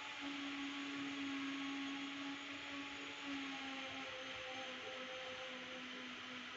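Faint steady hiss with a low electrical hum underneath; the hum breaks up into short pieces after about four seconds.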